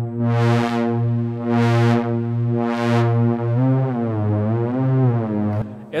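A synthesizer patch played from a MIDI keyboard controller: one held low note with a bright, hissy swell about once a second. After about three and a half seconds the pitch starts to waver up and down. The note stops shortly before the end.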